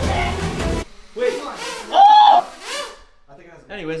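Background music cuts off abruptly just under a second in. A person's voice follows with a few drawn-out, wordless sounds that rise and fall in pitch, the loudest about two seconds in.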